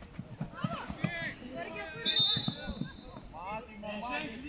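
Players and coaches shouting across a football pitch, with a single referee's whistle blast about two seconds in that lasts about a second and is the loudest sound.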